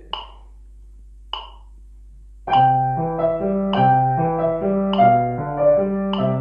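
Grand piano playing a slow two-hand 3-against-2 exercise in legato, left-hand triplets against right-hand eighth notes, coming in about two and a half seconds in. A metronome clicks about every 1.25 s, twice alone before the piano enters.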